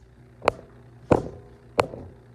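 Three sharp knocks and bumps of a phone being handled close to its microphone, spaced about two-thirds of a second apart.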